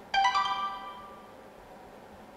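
Short electronic notification chime: two quick notes, the second higher, ringing out and fading within about a second.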